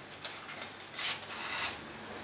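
Sheet of scrapbook paper rustling and rubbing under the hands as its glued flaps are lifted and pressed down: a faint tick, then about a second in a rustle lasting roughly half a second.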